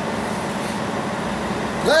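Steady outdoor background noise with a low hum running under it; a man's voice starts near the end.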